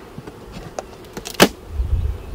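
Honeybees buzzing faintly around the hive, with one sharp click about one and a half seconds in, fitting a metal hive tool striking the wooden hive box. A low wind rumble on the microphone comes in near the end.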